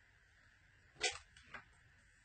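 A sharp tap about a second in, followed by two lighter taps, from objects being handled on a worktable, over quiet room tone with a faint steady hum.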